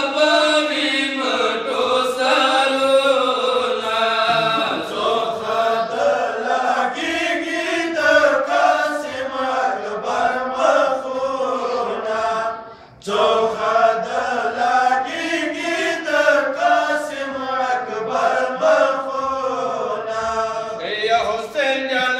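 Group of men chanting a Pashto mourning lament (noha) together into microphones, their voices rising and falling in a sung recitation, with one brief break a little past halfway.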